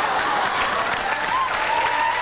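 Studio audience applauding, a steady dense clapping.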